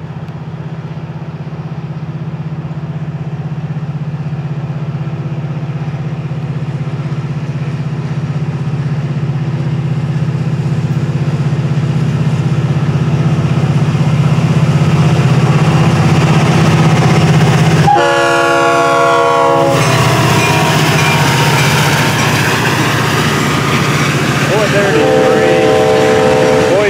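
Florida East Coast diesel locomotive 433 approaching with a steady engine drone that grows louder as it nears. About two-thirds of the way through, it sounds its horn for about two seconds, then gives another short horn near the end as it passes with its hopper cars.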